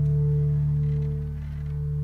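Bass guitar and acoustic guitar letting a final chord ring out: a steady low sustained chord with a soft dip about a second and a half in before it holds again.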